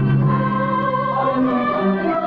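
A mixed church choir of women's and men's voices singing in parts, holding long notes and moving to a new chord about halfway through.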